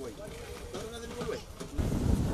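Voices of people talking as a group walks, with a low rumbling noise coming up near the end.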